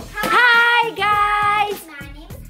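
Children's voices calling out two long, drawn-out sing-song notes, each held for most of a second.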